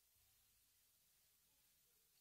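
Near silence with only a faint hiss: the gap before a recorded song starts again.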